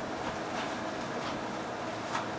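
Steady low room hum with a few faint soft footfalls on the floor.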